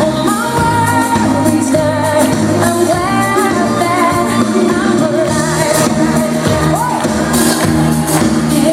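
Pop song with a singing voice over a steady beat and bass line, loud on stage speakers.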